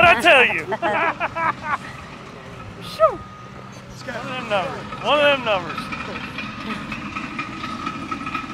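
Heavy construction equipment running on a job site, with a steady low engine sound and a thin, steady whine coming in about three seconds in. People talk over it at the start and again in the middle.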